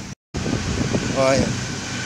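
A split-second dropout to dead silence near the start, then a steady background hum with one short voice sound about a second in.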